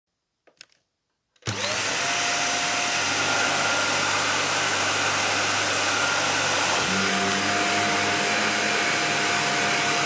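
An upright vacuum cleaner switched on about one and a half seconds in: its motor spins up with a quick rising whine and then runs steadily. About seven seconds in its tone shifts and it keeps running.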